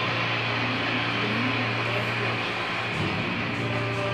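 A large crowd applauding in a recorded speech, played through a theatre's loudspeakers, with a steady low hum underneath.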